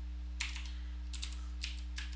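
Computer keyboard typing: about six separate key taps, one of them the Enter key that runs the command, over a steady low electrical hum.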